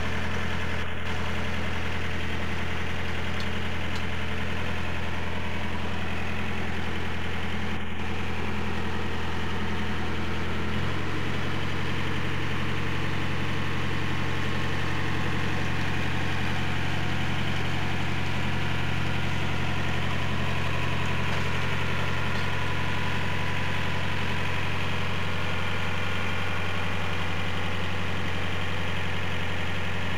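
Narrowboat's inboard engine running steadily under way, with a sudden change in its note about ten seconds in.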